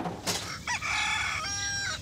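A rooster crowing once: one drawn-out crow in two parts, coming in about two-thirds of a second after a short rush of noise.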